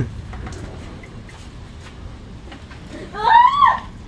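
Faint clinks of plates and cutlery at a meal, then, about three seconds in, one short high-pitched vocal sound that rises and falls in pitch.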